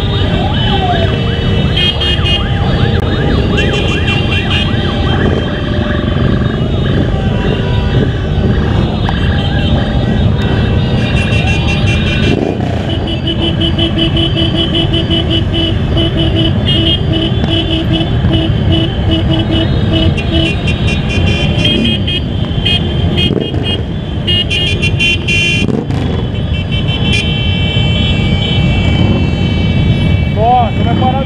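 A motorcycle convoy on the move: the Suzuki V-Strom DL650's V-twin engine and the surrounding motorcycles run under heavy wind noise on the microphone. Horns sound over it, and one toots in a steady repeated beat for several seconds midway.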